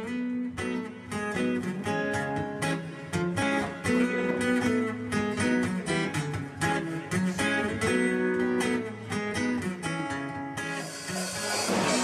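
Guitar playing a picked, melodic intro of quick single notes. About ten and a half seconds in, a full rock band comes in with drums and cymbals and the music gets louder.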